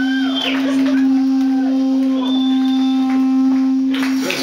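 A single note held steady on an amplified stage instrument, ringing through the amplifier without change in pitch, with faint overtones above it.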